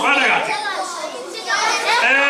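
Many children's voices shouting and calling out at once in a large hall, dipping briefly about a second in.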